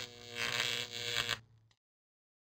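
A short held tone that swells twice and cuts off about a second and a half in.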